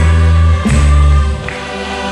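Gospel worship song with a group of voices singing over band accompaniment, a heavy bass line that drops out about a second and a half in.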